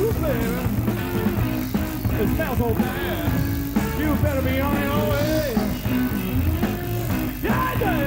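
Blues-rock band playing live, a lead line bending between notes over electric bass and drums.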